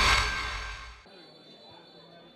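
Whoosh sound effect of a TV channel logo transition: a noisy swell that peaks at the start and fades, cutting off about a second in. Faint background noise with a steady high tone follows.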